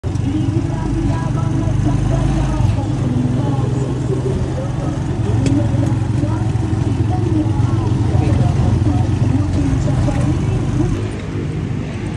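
Motorcycle engine of a tricycle heard from inside its sidecar while riding, a steady low drone with road noise, with indistinct voices over it; it drops off about a second before the end.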